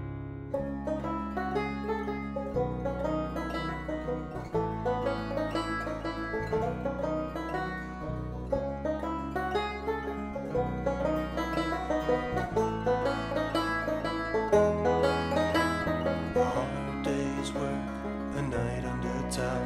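Open-back banjo picking a quick instrumental break over acoustic guitar chords, the low notes changing about every two seconds.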